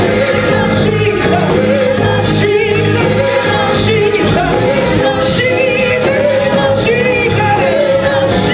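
A woman singing a gospel solo, her voice wavering with vibrato, over live church instrumental accompaniment with steady low sustained notes and recurring drum and cymbal hits.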